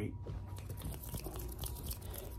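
Close-miked crackling and rustling of fabric and hands brushing against the microphone, irregular crisp clicks over a low handling rumble.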